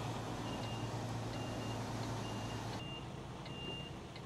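Heavy goods vehicle's diesel engine running at low speed, heard from inside the cab, as the lorry creeps forward. A short, high warning beep repeats about once a second, and the engine noise drops a little about three seconds in.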